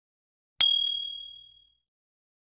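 A single bright ding sound effect about half a second in, ringing and fading away over about a second: the confirmation chime of a subscribe-button animation.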